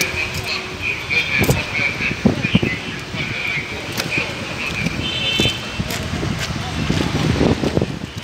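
Street background of indistinct voices and passing traffic, with a high, thin tone sounding on and off.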